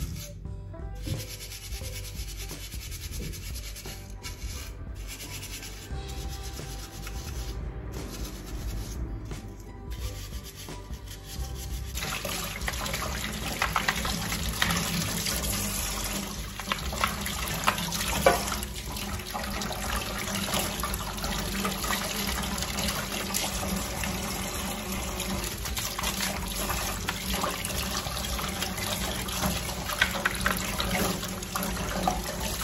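Quiet rubbing and handling of plastic parts at a sink, then about twelve seconds in a kitchen tap turns on and runs steadily into a stainless-steel sink, splashing over a plastic part being rinsed and rubbed by hand.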